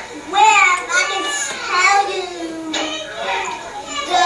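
A young child talking in the recorded clip, the words not clear, heard as it plays over the room's speakers.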